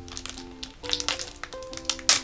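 Background music with a simple melody, over sharp crackles and clicks of a clear plastic wrapper being handled and opened, with a cluster about a second in and another near the end.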